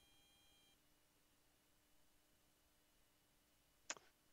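Near silence on an online meeting's audio line, with one short click just before the end.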